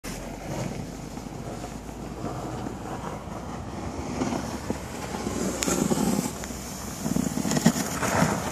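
A car engine running at low speed as it tows a wooden plow through snow, with louder crunching and scraping in the second half.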